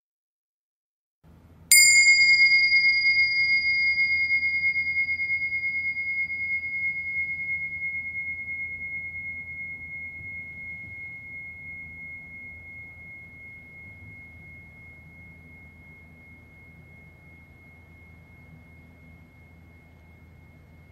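A meditation bell struck once, a couple of seconds in, ringing a single high clear tone that fades slowly and is still sounding at the end. It is the bell that closes the guided meditation.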